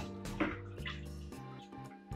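Water swishing and dripping as a wooden spoon stirs nutrient solution in a five-gallon plastic bucket, with a couple of short swishes in the first second, under steady background music.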